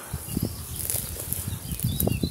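Wind buffeting the microphone outdoors: a low, irregular fluttering rumble.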